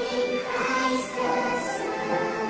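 Worship choir singing held notes over instrumental accompaniment, sped up and pitched up into a high chipmunk voice.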